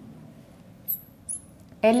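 Marker tip squeaking on a glass writing board as an equation is written: two short, high squeaks, about a second in and again a moment later.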